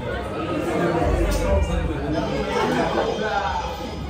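Several people talking at once: overlapping chatter of voices, no single voice standing out.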